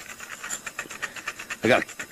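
Fast run of rustling clicks, about ten a second, as a wallet is pulled out and rummaged through. A man's voice comes in near the end.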